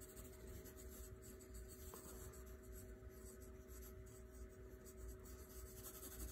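Faint pencil strokes on drawing paper as a pencil sketches, over a faint steady hum.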